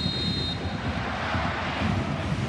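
Steady stadium crowd noise, with a high referee's whistle blast signalling that the penalty may be taken, stopping about half a second in.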